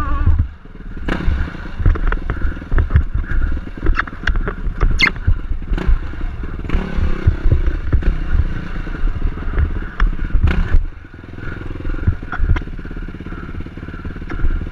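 Yamaha dirt bike engine running and revving as the bike rides over rocks, with frequent knocks and clatter from the wheels and chassis striking stone. The throttle eases off briefly about half a second in and again about eleven seconds in.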